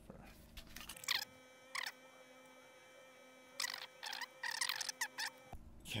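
Glass jar being handled and its metal screw lid worked off: a few short squeaky scrapes about a second in, then a busier cluster of scraping and clinking about three and a half to five seconds in.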